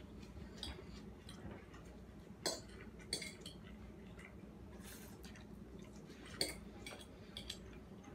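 Metal forks clicking and scraping against ceramic plates as noodles are twirled and eaten, in scattered light clinks, with two sharper clinks about two and a half and six and a half seconds in, over a faint steady hum.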